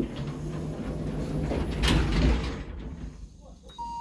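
Stainless-steel sliding doors of a 2004 Stannah passenger lift running open with a low motor hum, with a knock about two seconds in. Near the end a steady beep sounds as a car button is pressed.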